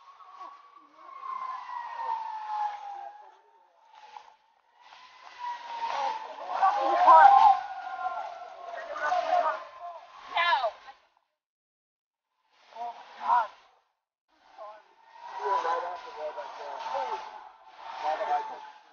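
Indistinct, muffled voices of people calling out at the scene, broken by short silences. Under them runs a steady high tone that slowly falls in pitch.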